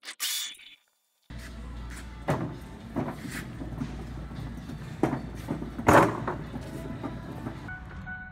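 A metal flatbed lumber cart loaded with boards being handled: a steady low rumble with irregular knocks and clanks, the loudest about six seconds in. A short scratchy burst comes at the very start.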